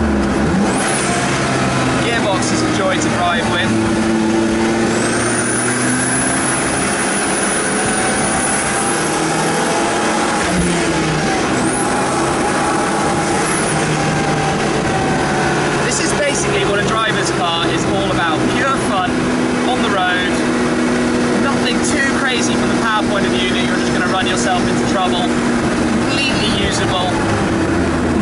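The Zenos E10 S's turbocharged 2.0-litre Ford EcoBoost four-cylinder engine under way on the road, heard from the open cockpit. Its pitch climbs, drops sharply about ten seconds in, and later holds steady.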